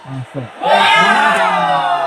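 A man's long drawn-out shout, its pitch sliding slowly down, after a couple of short voice sounds: a cheer as a penalty kick goes in.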